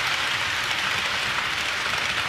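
HO scale model train rolling along sectional track close by: a steady, loud rushing of wheels on rail over a low rumble.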